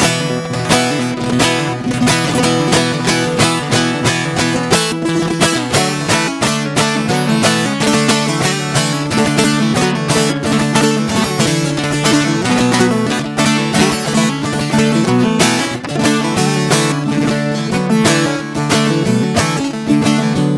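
Bağlama (long-necked Turkish saz) played solo with rapid strumming, steady low strings ringing under the melody: an instrumental passage between the sung verses of a Turkish folk song (türkü).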